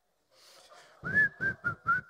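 A man whistling four short notes at one pitch starting about a second in, the first rising, with soft low thuds under the notes.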